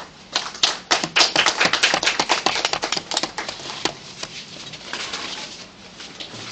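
A rapid, irregular clatter of sharp clicks lasting about four seconds, loudest in the middle and thinning out near the end.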